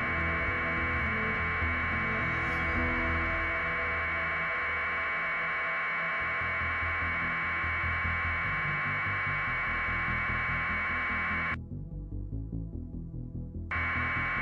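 Steady hiss of an open radio or intercom channel over a low uneven throbbing. The hiss cuts out for about two seconds near the end, leaving only the throbbing.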